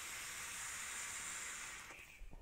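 A drag on a Hellfire Shadow regulated squonk box mod: a steady hiss of air and vapour drawn through its atomizer as he inhales, tapering off just before the end.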